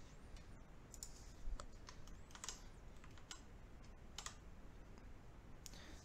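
Faint, scattered light clicks and scrapes of a small improvised spatula working thick modelling mud along the edge of a wooden coaster base.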